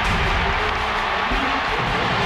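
Stadium crowd noise, a dense steady roar, mixed with music.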